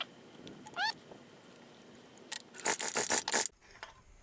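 Recoil starter being pulled to crank a Briggs & Stratton horizontal-shaft four-stroke engine for a compression test, with two short rising squeaks near the start. A quick run of sharp clattering strokes follows from about two and a half seconds in and stops just before the end.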